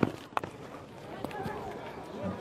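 Cricket bat striking the ball: a sharp knock right at the start, with a second smaller knock about a third of a second later, over faint ground noise and distant voices.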